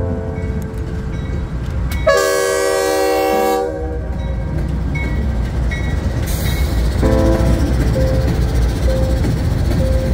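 Norfolk Southern diesel freight locomotives rolling past close by with a steady low rumble. The air horn sounds one blast about two seconds in, lasting about a second and a half.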